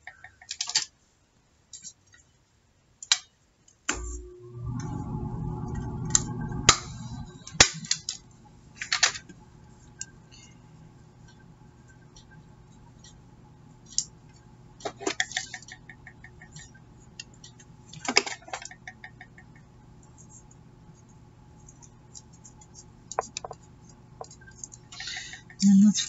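Paper and lace being handled and folded by hand on a cutting mat: scattered light rustles, taps and clicks. About four seconds in a low steady hum starts, loudest for the next few seconds, then carries on faintly underneath.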